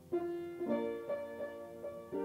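Piano music: single notes and chords struck one after another, roughly every half second, each ringing on.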